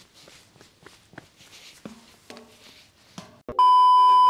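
Faint footsteps on asphalt, then about three and a half seconds in a sudden glitch click and a loud, steady test-tone beep like a TV colour-bars signal.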